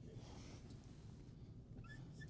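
Near silence with faint squeaks of a dry-erase marker writing on a whiteboard, a few short chirps near the end.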